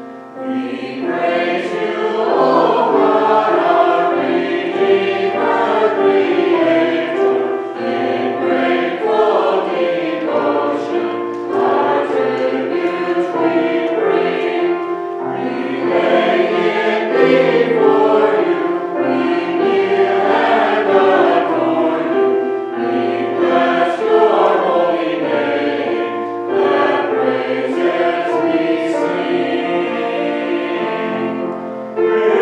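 Mixed church choir of men's and women's voices singing an anthem in parts, in long phrases with brief dips between them.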